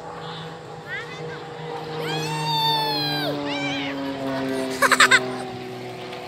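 Distant drone of a military aerobatic plane's engine overhead: a steady hum whose pitch slowly falls. A child's high voice rises into one long drawn-out call about two seconds in, with shorter child vocalizations around it.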